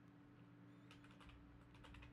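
Faint typing on a computer keyboard, a few soft keystrokes, over a low steady hum.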